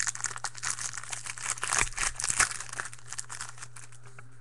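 Foil trading-card pack wrapper being crinkled and pulled open in the hands: a dense, irregular crackling that dies down about three seconds in. A steady low hum runs underneath.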